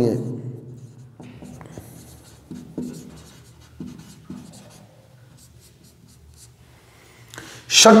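Someone writing by hand, a run of short, faint strokes over the first four or five seconds that thin out toward the end.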